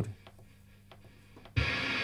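A short, sudden burst of distorted electric guitar through the Zoom G3Xn multi-effects unit about one and a half seconds in, over a steady low hum from the rig.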